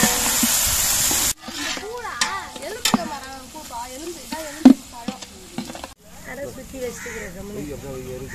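Sliced onions sizzling loudly in hot oil in a large aluminium pot. After a cut about a second in, the frying is quieter and a metal ladle stirs and scrapes against the pot, with one sharp knock of the ladle on the rim near the middle.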